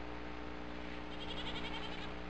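Quiet film-soundtrack background: a steady low hum, with faint rapid high-pitched chirping starting about a second in.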